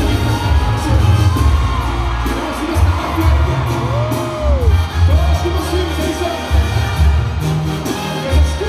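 Live Sinaloan banda music played through an arena PA, with a man singing into a microphone over a heavy booming low end, and the crowd cheering.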